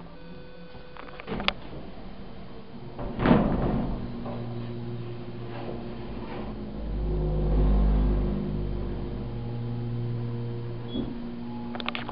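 Elevator doors closing with a sharp knock about three seconds in. Then a telescoping holeless hydraulic elevator runs with a steady low hum, and a heavy low rumble swells for a second or two in the middle as the car vibrates. A small click comes near the end.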